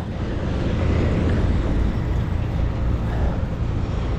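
Steady low rumble of truck engines and passing street traffic at a road-works site.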